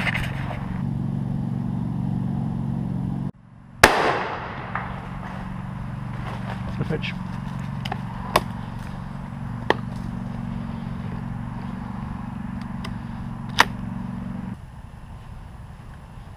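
A single loud shotgun shot about four seconds in, with a short echoing tail, followed later by a few faint sharp clicks.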